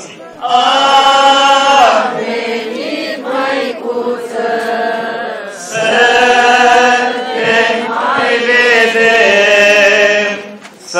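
Orthodox liturgical chant sung into a microphone, long held notes in phrases, the first starting about half a second in and another swelling in about six seconds in.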